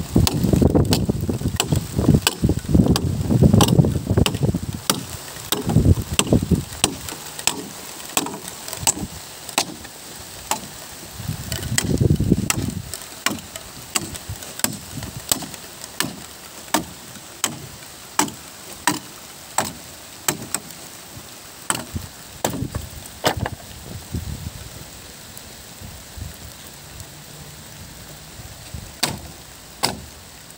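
A steady run of sharp hammer blows on wood, about one a second, as the slats of a small wooden hut are knocked apart. A low rumble swells under the first several seconds and again about twelve seconds in.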